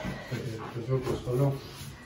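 A man's voice speaking quietly and indistinctly.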